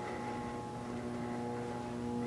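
A steady low hum with several held tones above it, unchanging throughout.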